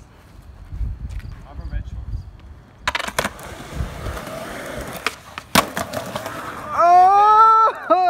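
Skateboard on concrete: the board claps down about three seconds in, its wheels roll, and two sharp clacks a little after five seconds mark the kickflip's pop and landing. Near the end a loud, drawn-out yell from a friend.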